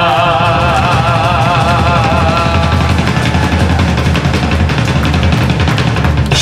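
Live rock band playing loudly with electric guitar, bass and drums. A long, wavering sung note rides on top for the first two seconds or so, then the band plays on without the voice.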